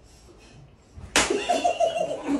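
A single sharp slap about a second in, followed at once by a group of men laughing.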